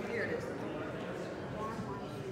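Indistinct murmur of several people talking quietly at once, with no words standing out.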